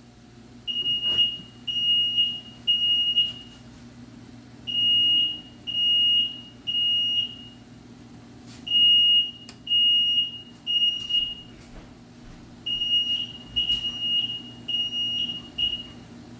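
Ceiling smoke alarm sounding its fire-alarm pattern: loud, high beeps in groups of three with a short pause between groups, four groups in all. It has been set off by kitchen frying, from an alarm that goes off at the least smoke.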